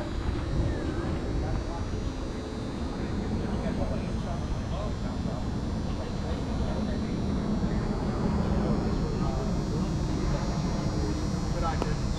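Steady low rumble of wind buffeting an action-camera microphone, with indistinct distant voices of players in the background.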